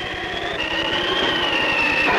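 Jet-like flight sound effect: a noisy rush with a high steady whine over it, growing slightly louder.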